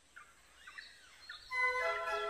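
Faint bird chirps over a quiet background, then a held musical chord comes in about three-quarters of the way through.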